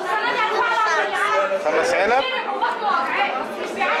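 Speech only: voices talking throughout, with more than one person speaking.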